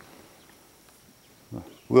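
Quiet outdoor ambience on a creek with a faint steady hiss and a short soft sound about one and a half seconds in, then a man starts speaking near the end.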